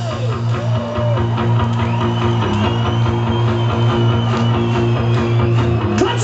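A rock trio playing live: strummed electric guitar, bass guitar and drums at a steady beat, with a high note held through the middle. It is heard from within the audience at an outdoor festival.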